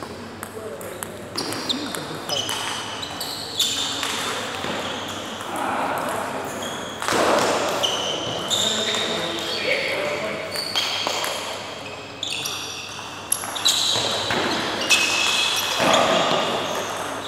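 Table tennis rally: the celluloid ping-pong ball clicking off the bats and table in quick exchanges, echoing in a large hall. Short high squeaks of sports shoes on the court floor come in between the hits.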